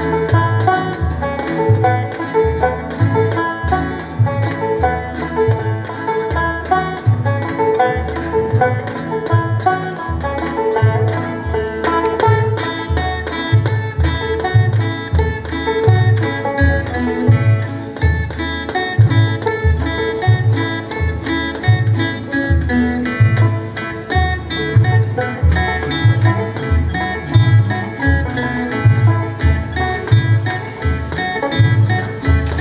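Acoustic bluegrass band playing an instrumental tune on banjos, acoustic guitars and upright bass, the bass keeping a steady beat under fast picked banjo notes.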